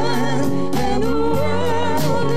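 Live band playing a slow song: a singer holds long, wavering notes over keyboard and sustained bass notes, with a steady beat about twice a second.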